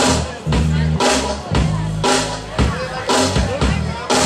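Live country-rock band playing the instrumental intro of a song: a drum kit beating about two hits a second over bass guitar, electric guitars and keyboard.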